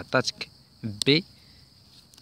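A man's voice giving two short hesitant syllables in the first second, then a pause. Under it runs a steady, faint high-pitched tone.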